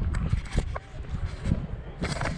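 Wind rumbling and buffeting on a handheld action camera's microphone while walking, with a few short clicks and scuffs and a faint voice in the distance.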